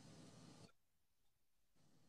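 Near silence: a faint hiss for about the first half second, then the sound cuts out to dead silence.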